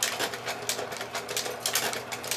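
Kodak Carousel slide projector with a stack loader fitted, cycling slides through the loader: a quick, irregular run of mechanical clicks and clacks over the projector's steady fan hum.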